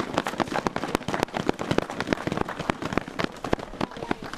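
Crowd applause: a dense patter of many hand claps that thins out a little near the end.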